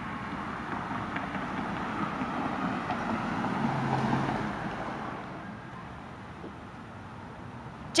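Outdoor background noise: an even rushing hiss that swells in the middle and fades toward the end, with a faint low hum at its loudest.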